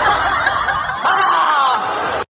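A person laughing, a run of snickering, chuckling laughs.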